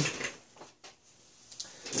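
A man's speech trails off, then a quiet pause holding one or two faint short clicks a little before the middle, then his speech resumes near the end.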